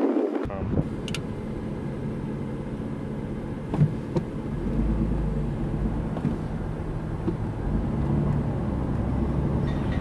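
A car engine running with a steady low hum and rumble, heavier in the middle, with a few faint clicks.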